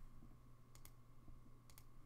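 Near silence: faint room tone with a low hum, broken by two faint double clicks about a second apart.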